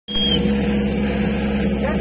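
An engine running steadily with an even low hum, and a brief high tone right at the start. Voices come in near the end.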